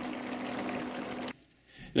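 Chicken and green pea stew simmering in a pot, a steady bubbling hiss over a low steady hum; it cuts off abruptly about a second and a half in, leaving near silence.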